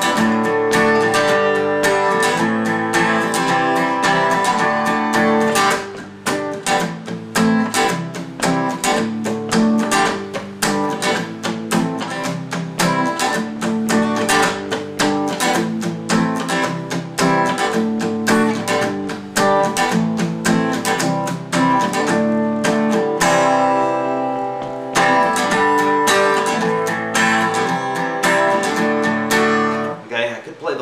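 Acoustic guitar strummed in a steady rhythm, playing open-position G, E minor, C and D chords without a capo. Near three-quarters of the way through one chord is left to ring for a couple of seconds before the strumming picks up again.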